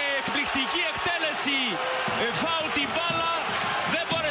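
Men's voices speaking and shouting, with several voices overlapping, over steady stadium crowd noise as a goal is celebrated.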